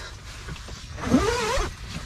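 A person's short wordless vocal sound about a second in, its pitch sliding up and then wavering down, lasting under a second.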